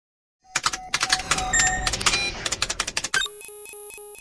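Electronic logo sting: a rapid flurry of glitchy clicks and ticks, then a steady synthetic tone pulsing about four or five times a second.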